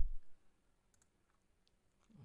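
Faint clicks of a computer mouse button, once about a second in and again near the end, in otherwise near silence.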